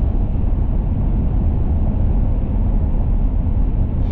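Steady low road noise of a pickup truck driving on the highway, heard from inside the cab: engine and tyres running without change.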